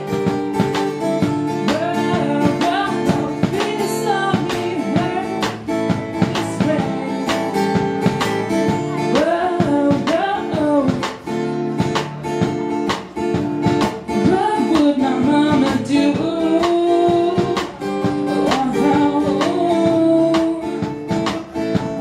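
Live acoustic guitar strummed as accompaniment to a singer, with a sung melody running over the chords.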